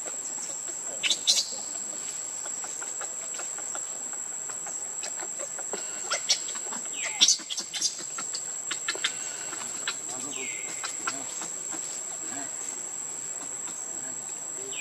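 Steady high-pitched drone of insects, with several short, sharp sounds on top, the loudest about a second in and around six to seven seconds in. Later, a short falling call is heard.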